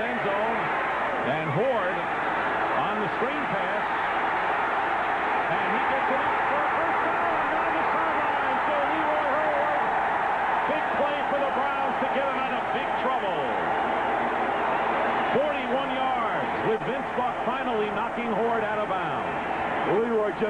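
Large football stadium crowd cheering, a steady, dense mass of many voices that holds through the whole play.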